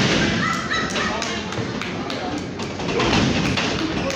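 A loud thud right at the start as a wrestler's body hits the ring mat, followed by spectators' raised voices, with further bumps and thuds on the ring later as the wrestlers grapple.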